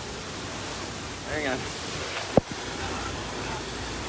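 Steady rushing noise as camping gear is carried, with a brief voice sound about one and a half seconds in and a single sharp knock just after two seconds.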